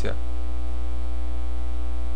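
Loud, steady electrical mains hum with a fainter buzz above it, unchanging throughout; the tail of a spoken word is heard at the very start.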